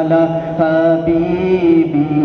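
Male voice chanting a slow devotional melody in long, held notes, a wordless stretch of a naat recitation.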